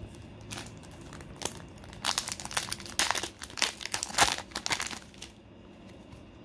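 Foil booster-pack wrapper of Pokémon trading cards being torn open and crinkled: a couple of light rustles, then a dense run of crackling from about two seconds in to about five seconds in.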